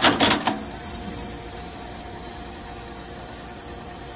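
Semi-automatic eyelet-setting machine setting a small eyelet through a leather strap: a rapid cluster of sharp metallic clacks in the first half second, then a steady hum with a held tone.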